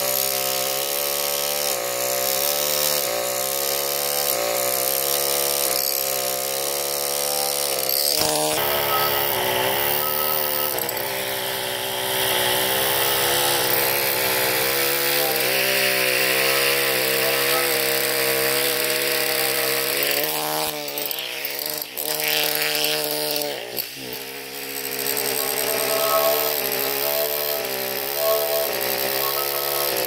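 Pneumatic carving hammer buzzing as its chisel cuts rosette detail into Indiana limestone. The pitch dips and rises as the tool is worked, with a few brief pauses.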